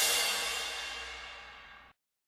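The closing crash of a song: a cymbal ringing on after the final hit and fading steadily, cut off abruptly near the end.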